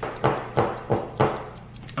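Clock-ticking sound effect: sharp, evenly spaced ticks, about three a second.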